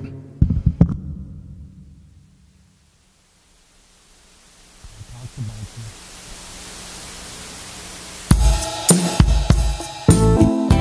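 Electronic arranger keyboard starting a freestyle piece: a few keyboard notes that die away, then a slowly rising, brightening swell of hiss-like sound with a couple of low bass notes. About eight seconds in, a drum beat with cymbals and keyboard chords comes in loudly.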